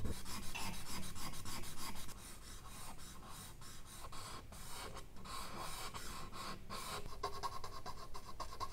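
A stick of charcoal scratching over medium-surface drawing paper in rapid short strokes. It is louder for the first two seconds, then lighter.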